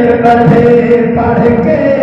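Male voices chanting a Saraiki naat into microphones, drawing out long held notes, with the pitch moving to a new note about a second in.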